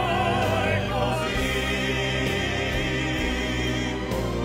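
Pop-opera song: male voices singing in operatic style with strong vibrato over instrumental backing music.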